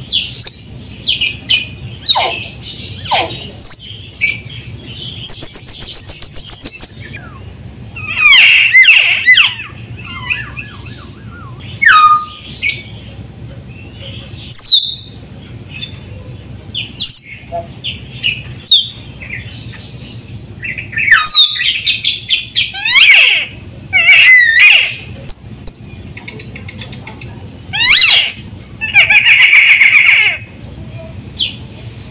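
Sulawesi myna (raja perling) calling loudly: a varied run of short whistles, upward and downward sweeps and harsh chattering notes, with a rapid rattling trill of about a second and a half some five seconds in.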